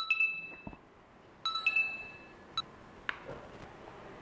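Mobile phone ringtone: a short, bright chime of a few clear tones, sounding twice about a second and a half apart, then a faint click.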